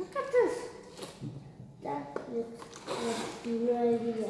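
Children's voices making wordless vocal sounds: a short falling cry near the start, then drawn-out held notes in the second half.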